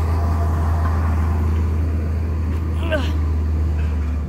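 Tractor engine running, a steady low drone.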